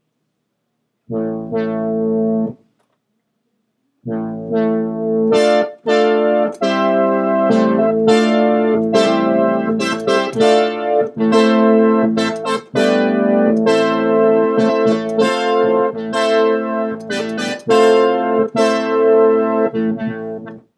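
Arturia's software emulation of the Minimoog synthesizer playing a horn-imitating patch from a keyboard: one short chord about a second in, then after a pause a continuous run of held notes and chords changing every half second or so.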